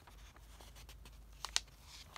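Newspaper pages being handled: faint rustling of the paper with a sharp crackle about one and a half seconds in.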